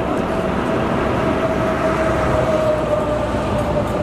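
Steady vehicle noise with a held whine that sinks slowly in pitch, like a heavy vehicle's engine running nearby.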